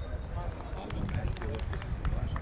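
Distant voices of footballers calling out on an outdoor pitch, over a steady low rumble, with a few faint knocks about a second in.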